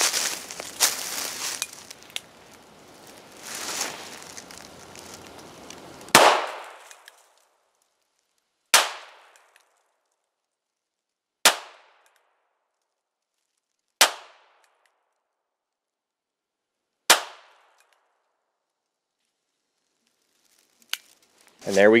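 Five gunshots from a North American Arms Sidewinder mini-revolver in .22 Winchester Magnum, firing ballistic-tip rounds one at a time, two to three seconds apart. Each is a sharp crack with a short ringing tail, and the first, about six seconds in, is the loudest.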